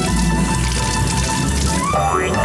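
Water running from a bathroom sink tap while hands are washed, with background music.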